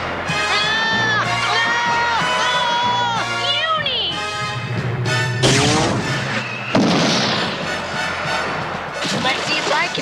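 Cartoon action soundtrack: dramatic music under a unicorn's frightened cries, ending in a falling wail about four seconds in. A magic energy-beam zap with sweeping pitch hits suddenly about five and a half seconds in, followed by a second noisy blast about a second later.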